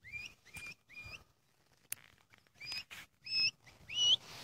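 Puppies whining in short, high squeals, about six of them, each rising and then holding briefly, the last two the loudest. A single sharp click comes about halfway through.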